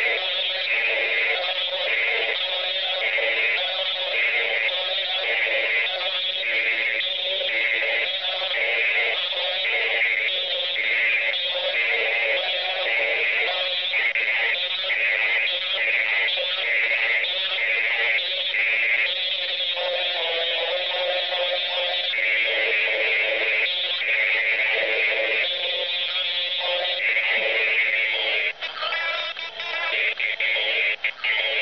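Electronic music with a synthetic, processed voice, played through a toy megaphone's small speaker. It sounds thin, with no bass, and has a regular pulsing beat. The pattern changes about two-thirds of the way through, and near the end it breaks up into choppy fragments.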